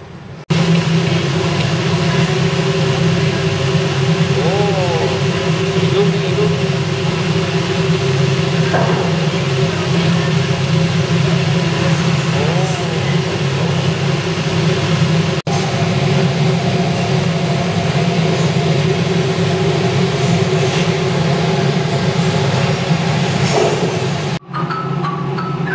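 Electric air blower of a floating-ball exhibit driving the jets that hold styrofoam balls aloft: a loud, steady hum with a rush of air, broken only by a momentary dip about fifteen seconds in.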